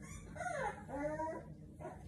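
Four-week-old American Bully puppy whining: two short, high-pitched cries that fall in pitch, in the first second and a half.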